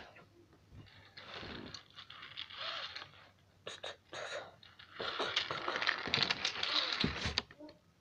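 A child's breathy hissing mouth noises in short broken bursts, imitating a train's doors closing and the train pulling out, with the longest stretch of hissing a few seconds from the end.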